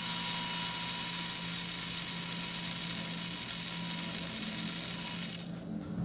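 Metal cantilever beam driven at 12.6 kHz by an electrodynamic shaker: a steady, very high-pitched whine with a fainter lower tone, over a hiss of salt grains rattling on the vibrating beam as they collect at the node lines of a resonance, its 16th natural frequency. It fades slightly and cuts off suddenly about five seconds in.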